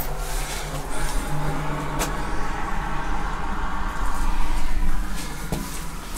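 Steady rain and wind noise heard from inside a small stone sentry box, with a single sharp click about two seconds in.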